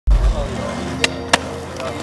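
Rap music with a heavy bass hit at the start, mixed with the sound of a skateboard rolling on concrete and two sharp clacks about a second in.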